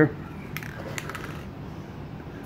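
Two faint metallic clicks, about half a second apart, as a shaken aerosol spray can is handled before spraying, over a low shop background.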